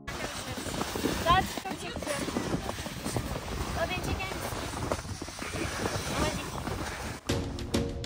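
Wind rumbling on the microphone outdoors, with brief snatches of voices. Background music comes back in about seven seconds in.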